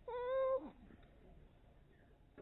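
A single short, high-pitched mewing cry lasting about half a second, holding one pitch and dipping at the end.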